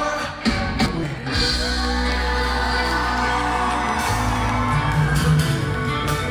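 Live rock band playing an instrumental passage with electric guitars, violin, bass and drums, right after the last sung word of a line; a low note is held for a few seconds before the music moves on about four seconds in.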